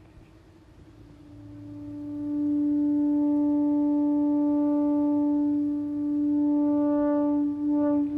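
Analog synthesizer holding one sustained note that fades in over about two seconds and then stays steady and full, with a horn-like tone. Near the end the note starts pulsing in a steady rhythm as the song's pattern begins.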